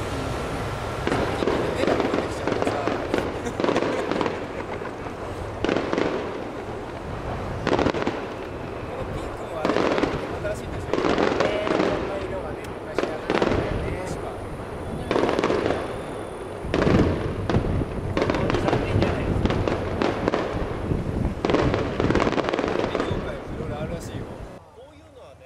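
Aerial firework shells bursting one after another, a dense run of booms every second or two that run into each other.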